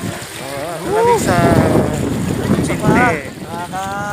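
Voices calling out over wind on the microphone and the wash of water as people wade through a shallow river.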